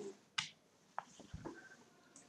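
A few faint, separate clicks of computer keyboard keys, spaced irregularly, the sharpest about half a second and a second in.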